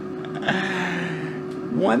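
Innsky air fryer running, a steady hum from its fan and heater at 380°, under a man's breathy vocal sound from about half a second in; speech starts near the end.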